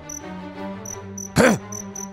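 Crickets chirping in an even rhythm, about three chirps a second, over a soft held music pad: a night-time ambience bed. About one and a half seconds in, a short voiced "hmm" rises and falls.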